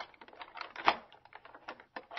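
A key rattling and clicking in a door lock: a quick irregular run of small clicks, with one louder click about a second in, as the lever handle turns.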